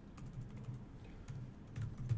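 Keys tapped on a computer keyboard: a few separate clicks at an uneven pace.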